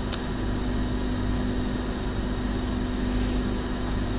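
Steady low hum with an even hiss, the background room noise of the recording, with one faint click just after the start.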